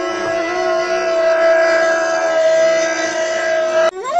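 A loud, long held horn-like note that has swooped up in pitch, stays level, cuts out briefly for a breath near the end, then swoops up again into a slightly higher held note.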